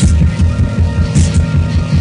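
Lo-fi music track from a cassette recording: a low bass pulse repeating about four times a second over steady droning tones, with a burst of hiss a little past the middle.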